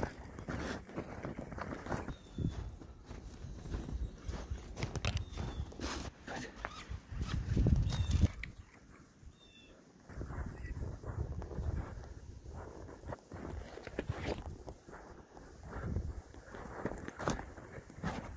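Footsteps crunching through deep snow in an irregular walking rhythm, with rustling and handling noise, and a short lull about halfway.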